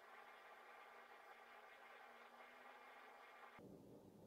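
Near silence: faint hiss and a faint steady hum, with the faint background changing near the end.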